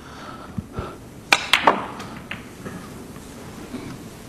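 Snooker cue tip striking the cue ball, then the cue ball clicking sharply into the brown a fifth of a second later as the brown is potted. Two faint low knocks come before the shot.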